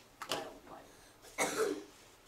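A person coughing twice, the second cough louder, about a second apart.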